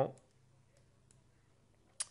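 Faint computer-mouse clicks as a move is played on an on-screen chessboard: a few light clicks about a second in and a sharper one at the end, over quiet room tone.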